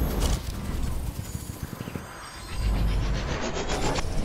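Sound design for an animated logo intro: a deep bass hit, a lull near the middle, then another deep hit with a rising sweep building toward the end, over a crackling, ticking texture.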